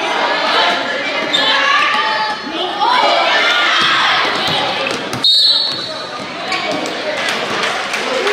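A basketball bouncing on a gym floor amid spectators' voices in a large gymnasium. About five seconds in comes one short, sharp referee's whistle, which stops play for a foul.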